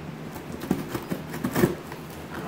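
Light scratching and a few soft ticks as a small blade works along the packing-tape seam of a cardboard box, with a hand resting on the cardboard.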